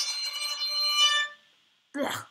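Violin string bowed very lightly right next to the bridge: one thin note, strong in high overtones, that stops about a second and a half in. It sounds terrible because the bow weight is too light for that sound point.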